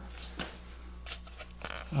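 A steady low hum with a few faint, short clicks and taps of handling.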